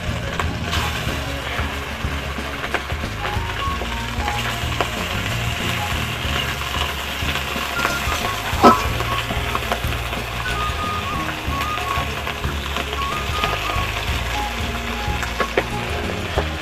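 Pieces of fish frying in hot oil in a steel wok, a steady sizzle, with one sharp click about halfway through.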